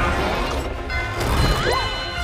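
Film score music mixed with cartoon sound effects: crashes and impacts, and a rising zap near the end.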